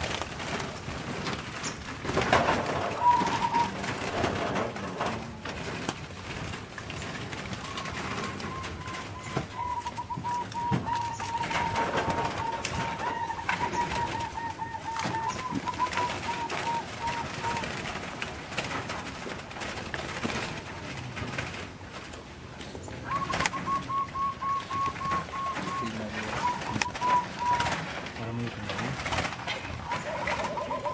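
Zebra doves (perkutut) singing in aviary cages: rapid runs of short, staccato cooing notes at a steady pitch. The longest run goes from about eight to eighteen seconds in, with further runs near the end.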